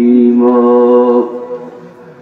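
A man's voice chanting a long, steady held note of Islamic devotional recitation into a microphone. The note fades away about a second and a half in.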